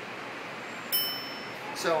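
Elevator arrival chime: a single high ding about a second in, ringing out for most of a second over a steady low hiss of room noise.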